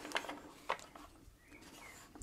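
Faint wooden clicks and knocks from a cherry-wood toy Land Rover being turned upright and set down, with two sharper clicks in the first second.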